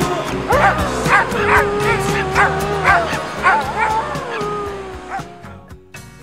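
A dog yipping and whining in a run of short, high calls, about two a second, over background music. The sound fades away near the end.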